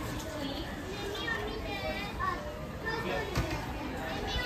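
A young child talking in a high voice for a few seconds, with one short knock about three and a half seconds in.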